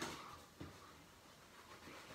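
A cloth towel rustling as it is rubbed and handled, fading out within the first half second, with a faint knock about half a second in. Then only quiet room tone.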